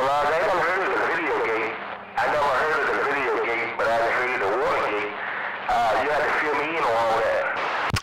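A man's voice received over a CB radio, narrow and tinny, with static under it, in a few long phrases with short breaks.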